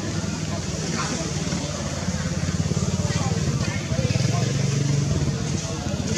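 A vehicle engine running steadily as a low, pulsing hum, growing somewhat louder midway.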